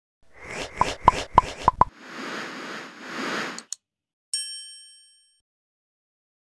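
Animated-logo sound-effect sting: a quick run of five sharp plops, two soft whooshes, a click, then a single bright ding that rings out and fades.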